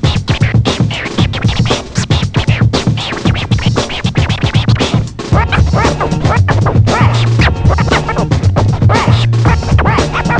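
DJ scratching a vinyl record on a turntable over a beat with heavy bass: rapid back-and-forth scratches that sweep up and down in pitch. About five seconds in, the bass becomes steadier and stronger.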